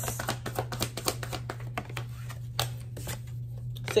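A deck of tarot cards being shuffled by hand: a rapid run of card clicks and flicks, thinning out in the second half.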